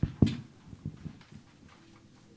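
Handling noise from a handheld microphone being fitted into its stand: one sharp thump about a quarter second in, then several lighter knocks and rubs that fade away.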